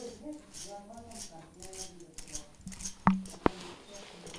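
Low, quiet voices, then two sharp clicks about a third of a second apart, three seconds in, as the hand is handled during fingerprinting.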